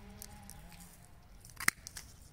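Hand pruning shears snipping once through a woody thornless blackberry cane, a single sharp snap near the end.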